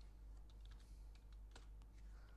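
Faint computer keyboard typing: about seven scattered key clicks, one louder than the rest about a second and a half in, over a low steady hum.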